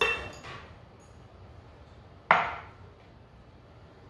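One sharp clink of a glass bowl knocking against a hard surface, with a short ring, a little over two seconds in, as the bowl that held the mango chunks is emptied into a blender.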